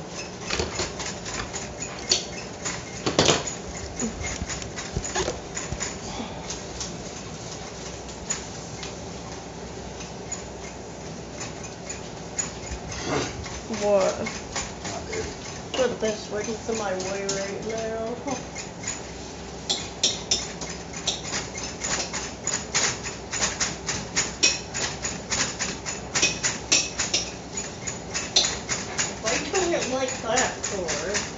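Kitchen utensils clicking and scraping against frying pans and dishes while meat is stirred in the pans, the taps coming several a second and thickest over the last ten seconds. Brief voices in the middle and near the end.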